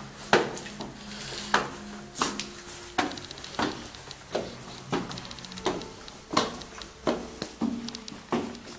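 Footsteps climbing stone stairs, a sharp step about every two-thirds of a second, as a small child in sneakers goes up.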